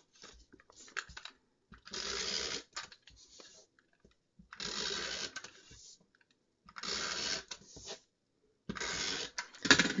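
Adhesive tape runner drawn along strips of a paper card frame: four strokes of about a second each, with small clicks and paper handling between them.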